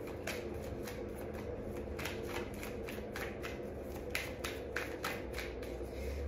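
A tarot deck being shuffled by hand: a steady, quick run of soft card flicks, about five or six a second.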